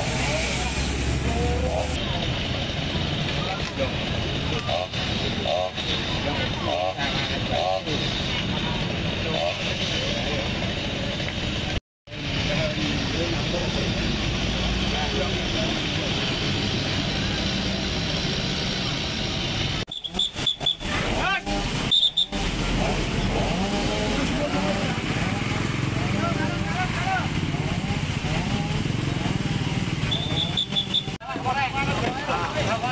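Street ambience: indistinct talk of many people over the steady sound of road traffic, with motorcycles and cars going by. The sound drops out for a moment about twelve seconds in and turns choppy for a couple of seconds around twenty seconds in.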